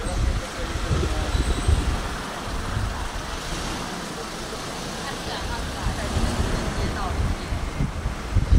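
Outdoor street ambience: indistinct talk of passers-by over a steady low rumble, easing a little in the middle.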